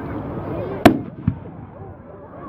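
Aerial firework shells bursting: one sharp, very loud bang just under a second in, then a fainter second bang about half a second later.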